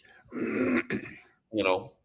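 A man clears his throat once, a rough burst lasting about a second.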